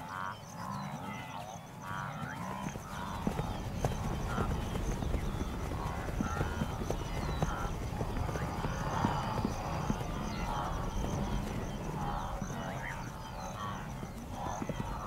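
A herd of antelope on the move, with many hoofbeats drumming over the ground and grunting calls scattered through. A steady, pulsing high tone runs behind.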